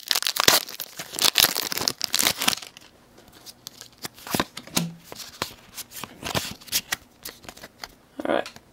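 Foil booster-pack wrapper crinkling and tearing open for about the first two and a half seconds, then quieter flicks and slides of trading cards handled one by one.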